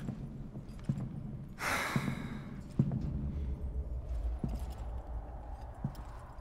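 A man's sigh: one breathy exhale about two seconds in. A faint low rumble follows.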